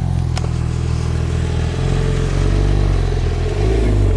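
Porsche 911 GT3 RS's naturally aspirated flat-six running at low speed, a steady low engine note that swells slightly past halfway as the car rolls by.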